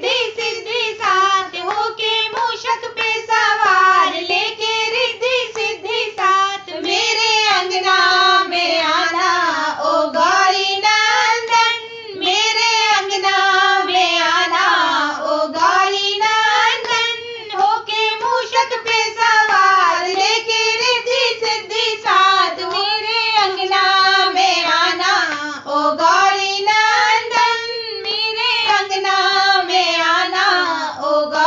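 Three women singing a Hindi devotional bhajan to Ganesha together in unison, one continuous melody line with no instruments.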